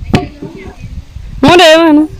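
A long wooden pestle thuds once into a wooden mortar as grain is pounded. Near the end comes a loud, drawn-out vocal note from a person.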